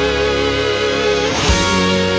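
Melodic rock (AOR) band recording led by electric guitar, with held chords that change about one and a half seconds in.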